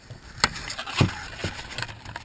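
Handling noise from the camera being moved around: rubbing and rustle with three short knocks, about half a second, one second and one and a half seconds in.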